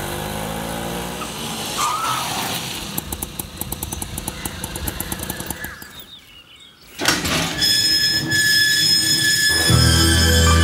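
An auto-rickshaw's small engine runs with a brief squeal about two seconds in, then a fast rattling tick for a few seconds. It is cut off just before seven seconds by music with bright chiming tones, and deep bass comes in near the end.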